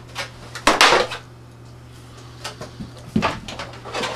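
Stiff vacuum-formed plastic sheet and parts being handled and knocked against a pegboard table, giving a few short clattering knocks, loudest about a second in, over a steady low hum.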